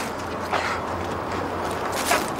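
Steady outdoor background noise with a low hum under it, like distant traffic or an idling engine.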